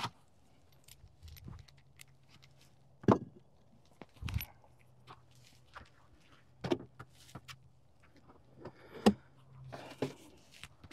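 Handling clatter as a concrete block is lifted off a beehive's metal-covered outer lid and the lid is then taken off: a string of separate knocks and scrapes, the loudest about three seconds in.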